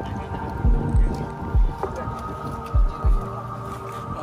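Soundtrack music with a heartbeat effect: deep double thumps, like a heartbeat, come three times over a steady droning hum.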